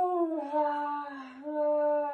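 A woman in labour moaning in one long, sustained, hum-like tone, muffled behind her hands. The moan eases briefly and swells again about halfway through.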